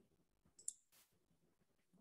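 Near silence on a call line, with one faint short click about two-thirds of a second in.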